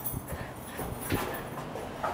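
Footsteps along a hallway, a few knocks about half a second apart, with the rustle of a carried Christmas tree's branches.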